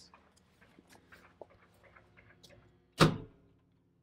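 Faint clicks as the main grid breaker is switched off for a grid-failure test and the battery system's transfer switch changes over, with a faint steady electrical hum underneath. A short, louder sound about three seconds in comes together with a spoken 'yes'.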